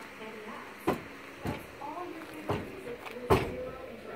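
Four sharp knocks or clacks about a second apart, the last the loudest, over faint background voices.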